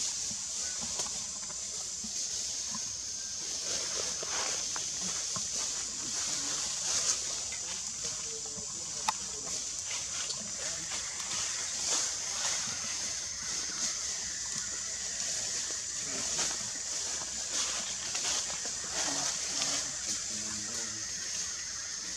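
Outdoor forest ambience: a steady high-pitched drone, with faint scattered rustles and soft sounds from the monkeys.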